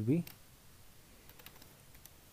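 Computer keyboard typing: a few faint keystrokes, most of them a little past the middle.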